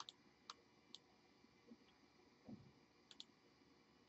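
Near silence with a few faint computer mouse clicks: three in the first second, then a quick double click a little after three seconds in.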